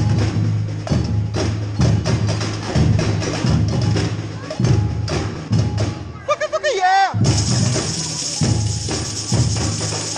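Street percussion band playing a funk groove: deep repeating bass hits under clicking wood-block and drum strokes. Near the end comes a brief break with a short gliding pitched call, then the full band comes back in with tambourines and shakers.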